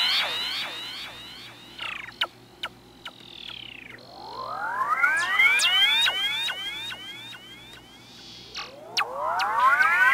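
Stylophone Gen X-1 synthesizer run through effects pedals, sending out swarms of overlapping rising pitch sweeps that swell up about halfway through and again near the end. Between the swells come a slow falling glide and a few sharp clicks.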